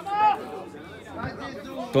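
Voices: a short high shout at the start, faint chatter through the middle, then a man's football commentary starting right at the end.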